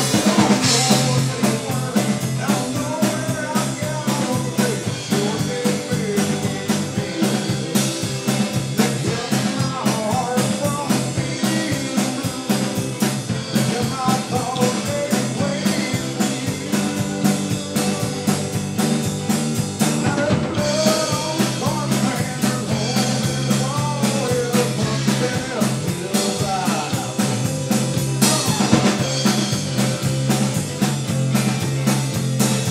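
Rock band playing live: drum kit with cymbals, electric guitar and bass guitar, at a steady loud level.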